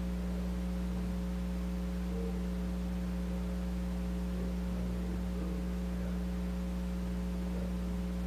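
Steady electrical mains hum with several evenly spaced overtones, from the lecture's sound or recording system, at an even level throughout.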